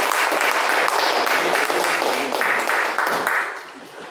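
Audience applauding in a small hall: steady clapping from many hands that fades out about three and a half seconds in.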